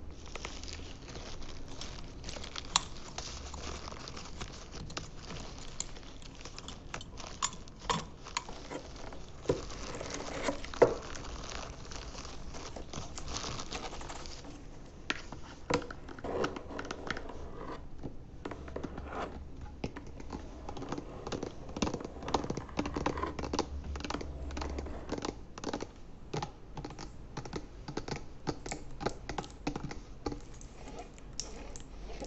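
Close-miked ASMR trigger sounds: hands and fingernails tapping, scratching and crinkling on cardboard and a plastic blister pack, a dense run of small irregular clicks and crackles, with one sharper snap about eleven seconds in.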